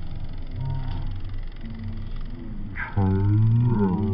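A man singing in a deep voice, holding long low notes, with a louder phrase about three seconds in.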